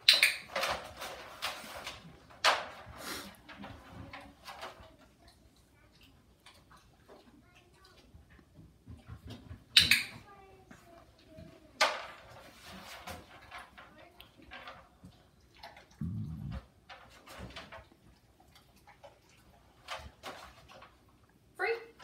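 Wire dog crate rattling and clanking as its metal door is swung and the dog shifts inside: a string of separate sharp metallic clicks and knocks, the loudest near the start, about 2.5, 10 and 12 seconds in, with a dull thump about 16 seconds in.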